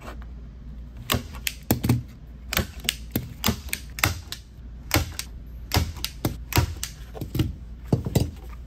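Hand-held manual staple gun firing staples through canvas into a wooden stretcher frame. It makes about twenty sharp snaps, often two close together, starting about a second in.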